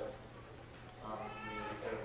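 A person's voice: after a quiet first second, a short stretch of talk in the second half.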